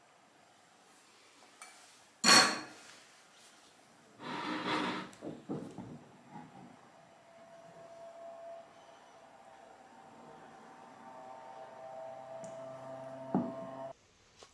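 A stainless steel saucepan and spatula knocked and set down on a wooden worktop. A sharp knock about two seconds in is the loudest sound, then a ringing clatter a couple of seconds later and a few lighter knocks. After that comes a faint steady hum that grows slightly louder near the end.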